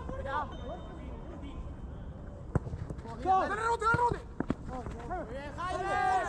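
Football players shouting and calling to each other across the pitch, picked up by a camera in the goal, with a few sharp knocks in between. The calls come mostly in the middle and again near the end.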